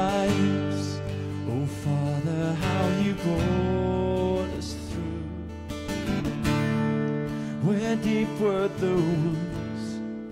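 Acoustic guitar strummed steadily, with a man singing a slow worship song over it in several phrases.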